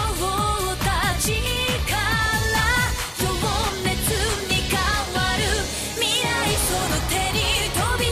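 Anime opening theme song: a pop song with a singer's voice over drums and band at a steady beat.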